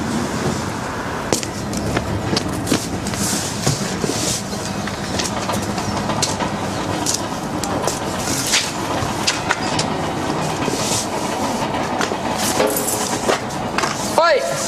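A steady rumbling din with many short, irregular clacks and knocks throughout.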